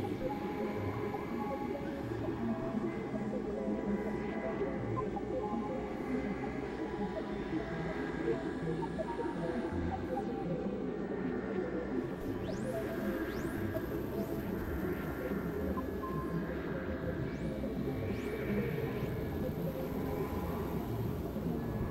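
Experimental electronic noise music: a dense, steady wash of layered synthesizer drones, tones and noise, with a few high upward-sweeping tones in the second half.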